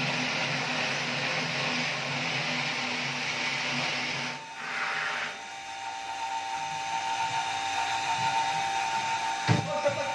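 Water rushing into a blue plastic water-station container from a refilling faucet, over a steady motor hum from the station's pump. About four seconds in the rush and hum drop away and a steady higher whine carries on, with a thump near the end as the container is handled.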